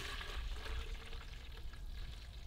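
Water poured in a steady stream from a plastic container into a plastic measuring cup, splashing as it fills, the sound easing off slowly toward the end.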